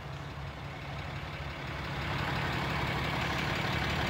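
A 6.7-litre Cummins diesel pickup engine idling: a steady low hum that grows gradually louder over the few seconds.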